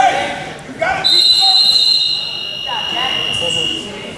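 A long, high-pitched signal of two steady tones at slightly different pitches. It starts about a second in, the higher tone stops partway through and the lower one holds for about three seconds in all. Voices come just before it.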